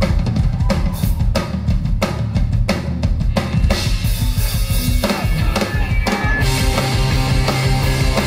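Live rock band: a drum kit beat of kick, snare and cymbals opens the song. About five seconds in, electric guitars come in and the sound thickens into the full band.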